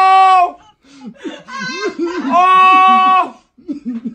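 A man wailing loudly in a high falsetto, holding one steady pitch. The wail breaks off about half a second in, short broken voice sounds follow, and a second held wail comes about two seconds in and lasts about a second.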